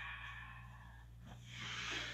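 A woman's breath during a yoga breathing exercise: a long exhale out through the mouth fades away over the first second, and about a second and a half in comes a fuller inhale through the nose as she rises with arms overhead.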